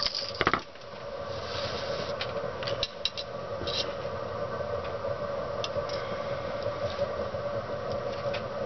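Small clicks and light taps of hands handling thin tabbing wire and metal side cutters on a plywood workbench, with a quick cluster of sharp clicks right at the start and a few fainter ones later. A steady hum runs underneath.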